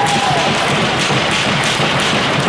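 Loud, steady crowd noise in an ice rink, with thumps and taps running through it.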